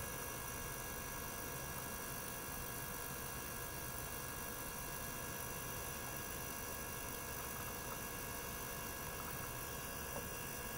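Steady mechanical drone and hiss from a small circulation pump and ultrasonic probes running together, with several held tones that do not change.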